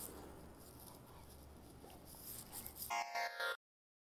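Faint, indistinct background noise, then a brief pitched sound about three seconds in. Half a second later the soundtrack cuts off abruptly into total digital silence.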